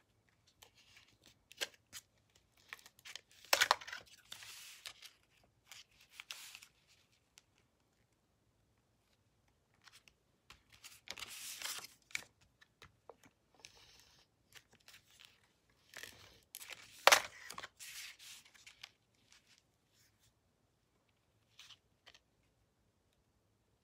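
Paper crafting sounds: short rasping strokes of an adhesive tape runner laying glue onto cardstock pieces, among light taps and rustles of paper being handled and pressed down. The loudest strokes come about a sixth of the way in and about three quarters through.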